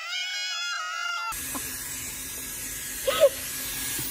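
Bio Ionic Smart X Pro hair dryer running, a steady airy hiss. For about the first second it gives way to a thin, high-pitched wavering sound with no bass, and a short burst of voice comes about three seconds in.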